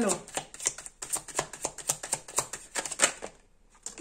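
A deck of cards being shuffled and handled in the hands: a rapid run of light clicks and slaps of card on card, stopping shortly before the end.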